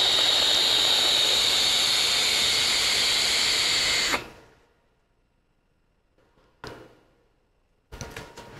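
Long lung inhale through a Horizon Tech Arctic sub-ohm tank with a bottom turbo dual coil firing. It makes a loud, steady airy hiss with a high whistle through the wide-open airflow, lasting about four seconds and stopping abruptly. Near silence follows.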